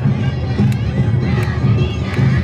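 Awa Odori festival music: drums with a sharp beat about every three-quarters of a second, under many voices shouting and a crowd.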